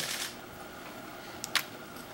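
Quiet room tone broken by two quick, sharp clicks close together about one and a half seconds in.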